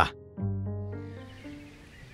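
Background music: a held chord that starts about half a second in and slowly fades away.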